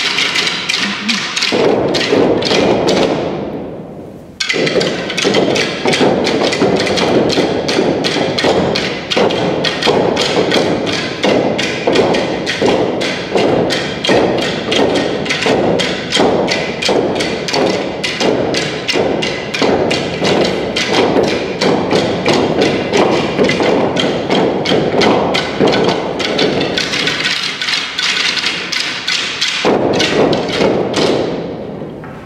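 Stick percussion ensemble striking long wooden sticks in a fast, even rhythm. The sound fades out about four seconds in, then the strikes come straight back. Near the end the deeper thuds drop away briefly and a lighter clatter carries on.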